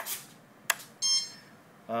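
Toggle switches on a Spektrum DX6i transmitter clicking twice, once at the start and again just under a second later, followed about a second in by a short high electronic beep.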